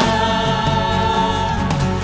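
Live church worship band: a group of singers performing a Kazakh-language praise song over electric guitar, acoustic guitar, drums and keyboard, holding one long note through the middle.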